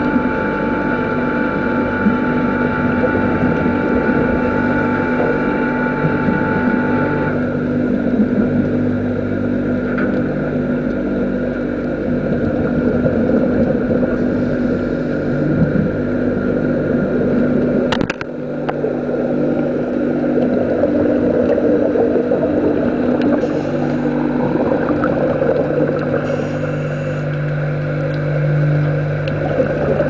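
Steady machinery drone heard underwater, a hum of several held tones. The higher tones drop out about seven seconds in, and there is one sharp click about eighteen seconds in.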